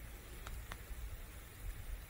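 Light rain falling: a faint, steady hiss, with two faint ticks a little after half a second in.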